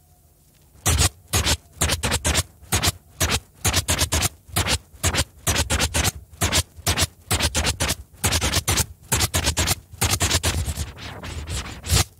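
Cassette tape of a trance DJ mix playing an irregular run of short, sharp scratching noises, about two to four a second, with near silence between them and no beat underneath.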